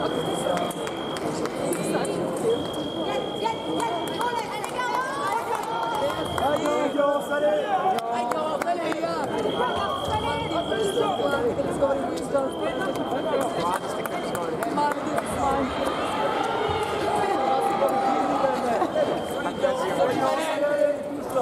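Indistinct voices and chatter of people in a large hall. A high electronic beep, each lasting one to two seconds, repeats about every three seconds through it.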